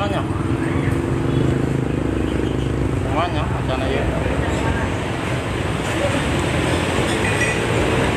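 Steady road-traffic rumble, with a man's muttered speech over it about three seconds in.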